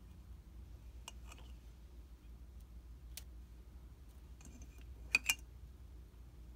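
Squeeze-handled stainless-steel mesh tea ball clicking and tapping against ceramic ramekins as it is opened, closed and moved between them. A few light clicks, then two sharper clicks close together near the end.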